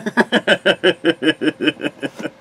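A man laughing hard: a quick, even run of loud "ha" pulses, about five a second, that fades out just after the end.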